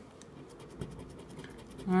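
A plastic scratcher scraping the coating off a lottery scratch-off ticket in quick, even strokes, about ten a second.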